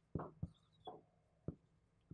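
Whiteboard marker writing on a whiteboard: about four short strokes and taps, spaced unevenly.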